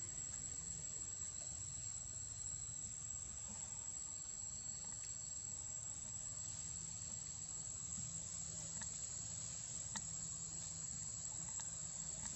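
Forest insects trilling steadily on one high, unbroken tone, with a low rumble underneath.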